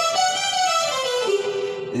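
Yamaha portable keyboard playing a single-note right-hand run that steps up and then back down, part of a G-major scale solo exercise.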